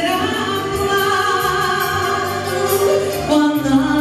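A woman singing a pop song into a handheld microphone over backing music with a steady beat, holding long notes in the middle.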